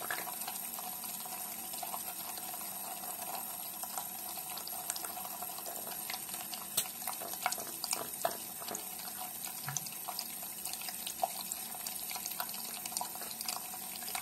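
Tap water running in a thin stream into a sink: a steady splashing hiss, with scattered short splashes and clicks, most of them a little past the middle.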